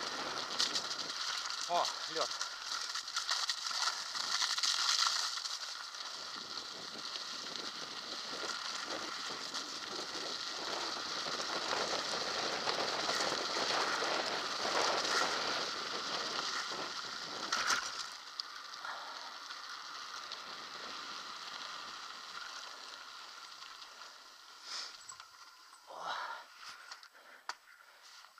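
Kona Cindercone mountain bike rolling fast down a wet gravel track: tyres crunching and spraying grit, the frame rattling, with wind rushing over the head-mounted camera's microphone. The noise eases after about 18 s as the bike slows onto smoother ground, and a few knocks come near the end.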